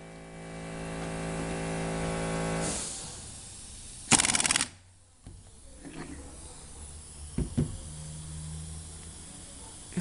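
Handheld pneumatic bottle capper's spindle running with a steady hum that fades out about three seconds in, followed a little past four seconds by a short, loud hiss of air. Faint clicks and a low hum follow as a green flip-top cap is tried on the bottle.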